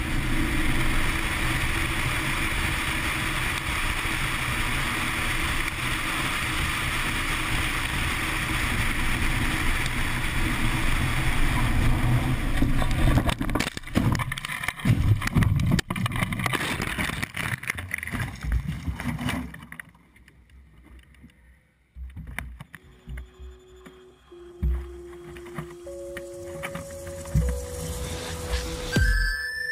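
Motorcycle riding at speed, heard as a steady rush of wind and engine on a helmet camera. About 13 seconds in it crashes: several seconds of irregular knocks, thuds and scrapes as the rider tumbles down a rocky slope, then it falls quiet. Steady electronic music tones come in near the end.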